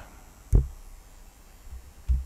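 Faint low hum with a single deep thump about half a second in.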